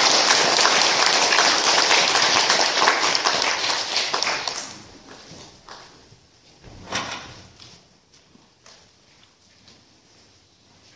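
Congregation applauding, dense clapping that dies away about five seconds in. Then a few scattered small knocks, with one louder thump about seven seconds in.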